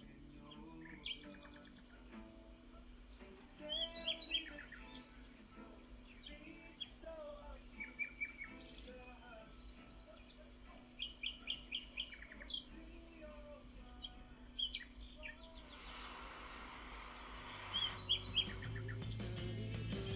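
Birds chirping and calling, many short chirps and trills from more than one bird, over a faint steady low hum of music. Near the end a low bass note and a soft hiss come in as the song starts to build.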